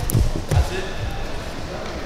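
Irregular low thuds of bare feet stepping and stamping on judo mats as two judoka grapple and one turns in for a throw.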